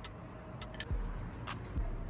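Light clicks and a few dull knocks from handling food in a plastic dessert bowl on a glass table: biscuits being set in and a spoon against the bowl.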